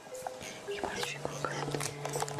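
A person whispering, with soft background music whose sustained notes come in about a second in.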